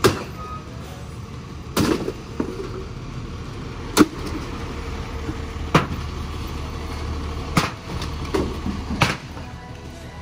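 Irregular heavy blows struck on a rusty sheet-metal pushcart, about eight strikes a second or two apart, over the steady low rumble of an idling truck engine.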